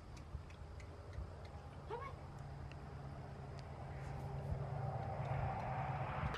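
Quiet outdoor background: a low steady hum with faint scattered ticks, a brief rising chirp about two seconds in, and a soft rushing that grows louder toward the end.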